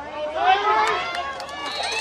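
Spectators shouting and cheering, several voices at once, getting louder about half a second in as a player makes a long run on a youth football field.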